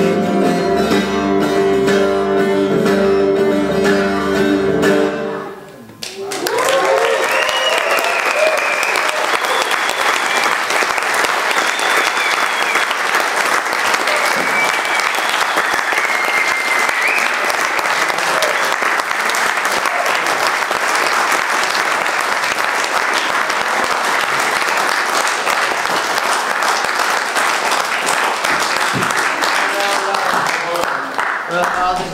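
An acoustic guitar's last chord rings out and stops about five seconds in. Right after, an audience applauds steadily with whoops and whistles for the rest of the time.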